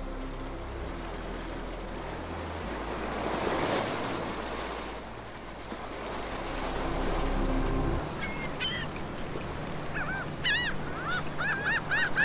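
Soft music with sustained low notes under two swelling washes like surf, ending about eight seconds in. Then birds call in quick repeated arching cries, more and more of them near the end.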